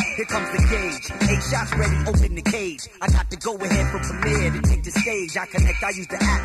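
Hip hop track from a DJ cassette mixtape: a rapper delivering a verse over a beat with heavy bass.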